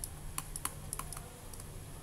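Stylus tapping and clicking on a pen tablet while handwriting is written, several light, irregular clicks over a faint steady hum.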